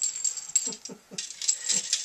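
Plastic Connect Four checkers clicking and clattering as they are dropped one after another into the upright plastic grid, a quick irregular series of short clicks. Short breathy puffs are mixed in among them.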